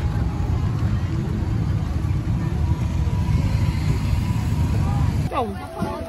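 Open-air market ambience: a steady low rumble with faint voices in the background. About five seconds in, the sound cuts abruptly to clearer, closer voices.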